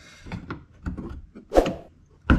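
Flathead screwdriver prying a factory plastic clip out of a car's wheel-arch liner: a run of small clicks and scrapes of metal on plastic, with a sharper snap about one and a half seconds in.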